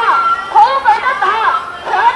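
Speech: one high-pitched voice talking rapidly, with no other sound standing out.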